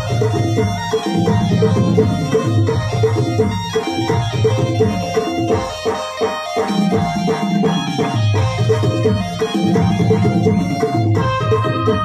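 Live dance music played on several electronic keyboards: a repeating keyboard melody over a steady, loud electronic drum beat, in the style of an Adivasi musical party. The low beat drops out briefly about six seconds in, then returns.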